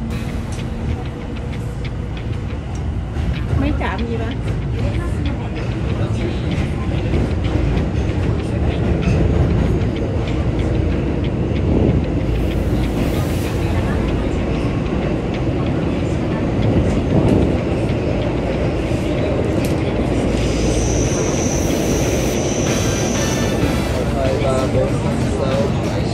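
Tokyo Metro Ginza Line subway train running between stations, heard from inside the car: a steady rumble of wheels and motors that grows somewhat louder over the first several seconds. A high, steady tone sounds for a few seconds near the end.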